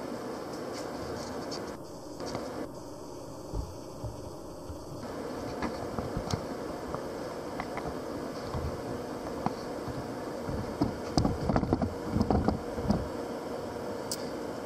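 Vertical milling machine running steadily with a low hum, and a few light knocks about eleven to thirteen seconds in.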